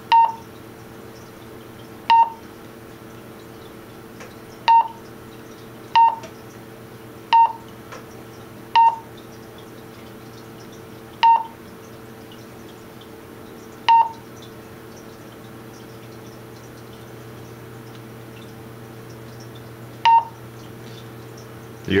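Wouxun KG-816 handheld radio giving short, single-pitched key beeps as its keypad and arrow keys are pressed, nine in all at irregular gaps of one to three seconds, with a longer pause before the last. A steady low hum runs underneath.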